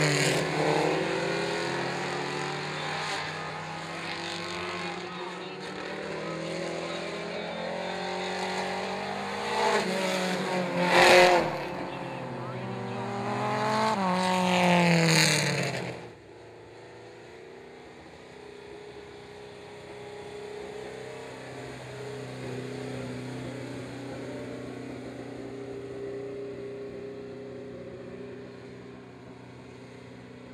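Mini stock race cars' engines racing on a dirt oval, their pitch rising and falling as they pass, loudest around eleven and fifteen seconds in. About sixteen seconds in the sound cuts sharply to one car's engine running quieter and steadier at low speed.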